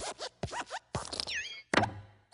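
Pixar logo sound effects: the Luxo Jr. desk lamp hopping on the letter I, a quick run of knocks with short squeaky, creaking glides between them. The loudest thump comes about three-quarters of the way in as the lamp squashes the letter flat.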